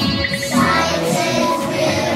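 A song with children singing over an instrumental backing.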